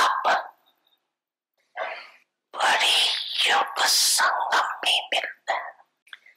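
A woman speaking into a microphone, in a language other than English, with a pause of about a second shortly after the start.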